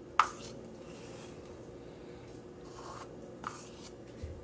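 Soft, faint scraping as thick Nutella is worked out of a plastic measuring cup into a glass mixing bowl, with one short knock just after the start and a small click a little past the middle, over a steady low room hum.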